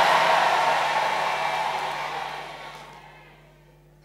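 A congregation shouting its response to the prayer all together, a wash of many voices that fades away over about three seconds.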